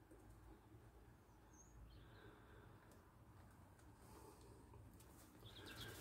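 Near silence: faint room tone with a low hum and one brief, faint high chirp about one and a half seconds in.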